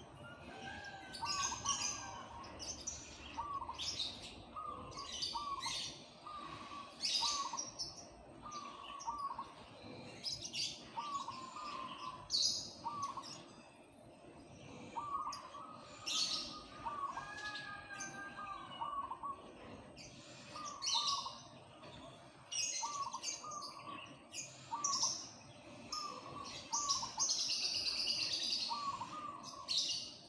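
Caged zebra dove (perkutut) cooing in short phrases of quick staccato notes, repeated every second or so. Other small birds chirp high and sharp over it, loudest near the end.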